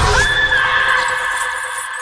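An eerie, sustained sound-effect tone: several steady pitches, one of them a high whine, that rise slightly at the start, then hold and slowly fade.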